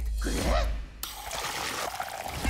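Water pouring from a bar tap into a glass, a steady running trickle starting about a second in.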